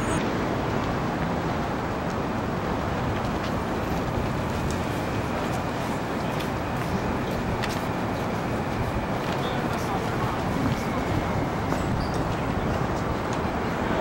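Steady city street noise, with traffic running in the background and faint voices, plus a few small clicks.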